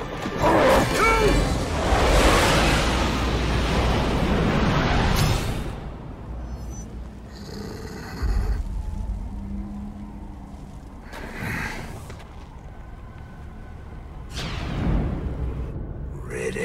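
Film soundtrack music. For about the first five seconds it is mixed with loud, dense rushing and rumbling effects, then it drops to a quieter stretch with a few swells.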